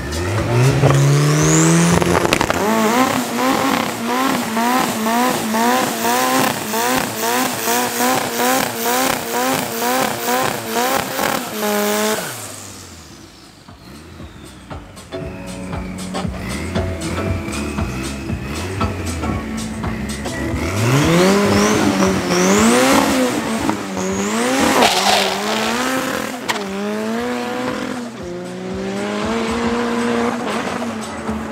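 Drag-racing pickup doing a burnout: the engine revs up and is held high for about ten seconds with a fast wavering note while the rear tyres spin and squeal, then drops off suddenly. Several seconds later it launches, the engine climbing through a series of gear changes as the truck pulls away down the strip.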